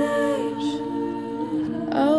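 Music: a hummed vocal melody held over steady sustained notes, gliding slowly from note to note.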